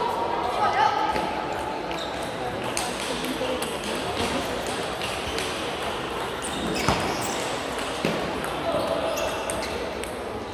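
Table tennis ball clicking off bats and the table in a rally, sharp short ticks in a large sports hall, over a murmur of voices.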